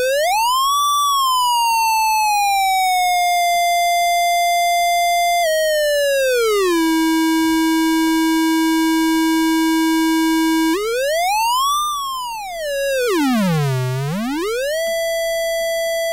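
Mouse-controlled theremin-style synthesizer oscillator patched in Max: one electronic tone with bright overtones, gliding in pitch as the mouse moves. It rises to a high note about a second in and slides slowly down to hold a middle note, then drops to a low held note. Late on it swoops up, dives to a deep low and comes back up to a steady middle note.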